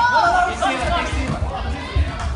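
Several voices talking and calling out over one another, close to the microphone, with dull low thumps underneath.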